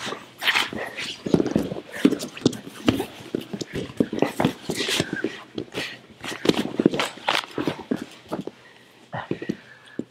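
Two men grappling on a training mat: grunts, strained breathing and the scuffling and thudding of bodies against the mat, in irregular bursts.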